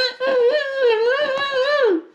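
A woman's voice in a high, wavering sing-song, held on drawn-out notes with no clear words; the pitch falls away near the end.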